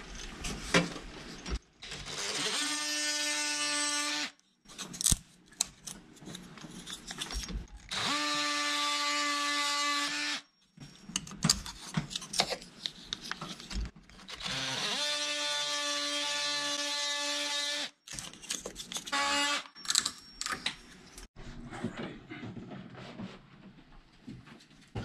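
Oscillating multi-tool buzzing in three runs of two to three seconds each as it scores protruding wooden door shims, each run coming up to speed as it starts. Between the runs come short snaps and knocks as the scored shims are broken off by hand.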